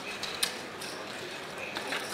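Casino chips clicking and clattering as a roulette dealer sweeps and gathers them off the layout, with a sharp click about half a second in and another near the end.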